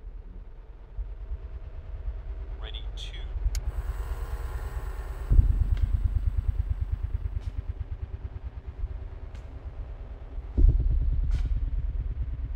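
Horror-film sound design: a low, rapidly pulsing throb with a dark drone. It jumps suddenly louder about five seconds in and again near the end, easing off each time, with a few faint high glides and clicks over it.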